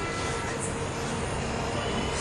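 Steady background hiss and hum of a recording during a pause in speech, with faint thin tones in the first half-second.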